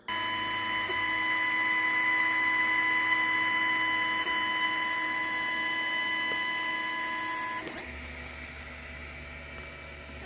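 Longer Ray5 10 W diode laser engraver running a job, its head tracing a square outline with a steady high-pitched whine. The whine cuts off suddenly about three-quarters of the way through, leaving a quieter low hum.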